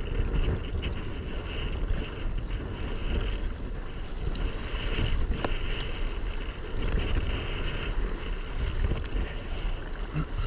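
Wind buffeting the microphone in a steady rumble over choppy open water, with water splashing and slapping around a kayak as it is paddled.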